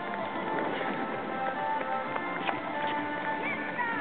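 Running footsteps of a crowd of marathon runners on an asphalt path, a quick patter of footfalls, with music playing over them.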